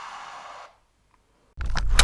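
The tail of the outro music, with a falling sweep, cuts off suddenly under a second in. After a short silence, a loud animated-intro sound effect starts abruptly near the end.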